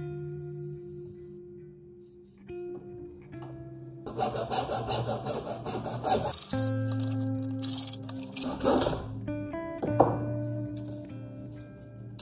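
Background music with plucked guitar notes. From about four seconds in to about nine seconds, a hacksaw sawing through PVC pipe is heard under the music.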